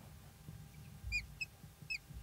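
Felt-tip marker squeaking on a whiteboard as words are written: a few short squeaks in the second half, over faint room hum.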